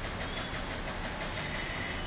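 Steady outdoor background noise, a low hum with hiss and no distinct events.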